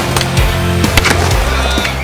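Skateboard riding with a few sharp clacks of the board, over music with a deep, steady bass line.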